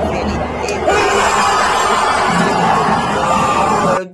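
Stadium crowd cheering and shouting, a dense, steady din of many voices.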